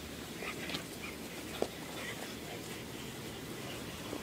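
A dog playing tug on a toy, making a few faint short sounds over a steady outdoor hiss, with one sharp click about one and a half seconds in.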